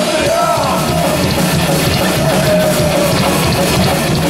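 Live metal band playing loud: distorted electric guitar, bass and drum kit, with a vocalist singing a long wavering line over them.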